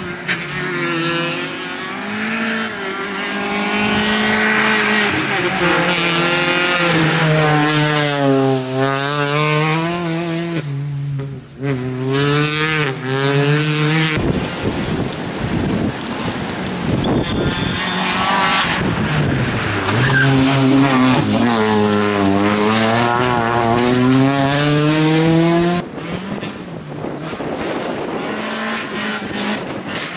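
Peugeot 206 rally car at full stage pace, its engine revving hard, the pitch repeatedly dropping and climbing again as it brakes, shifts and accelerates. The sound jumps abruptly twice, about halfway through and near the end, where the footage cuts to another pass.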